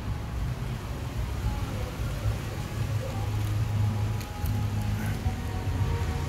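Low, fluctuating rumble of wind buffeting a phone's microphone.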